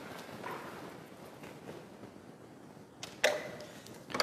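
Faint hall background, then about three seconds in a sharp click and a louder knock: a Subbuteo shot, a figure flicked into the small ball, which goes in for a goal.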